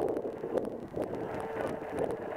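Wind noise on the microphone, a steady rough haze with scattered light ticks.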